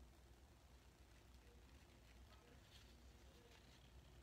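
Near silence: room tone with a steady faint low hum and a few faint light scrapes, as of cardboard being handled.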